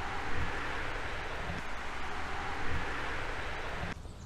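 Steady rushing noise, with no distinct events in it, that cuts off abruptly near the end.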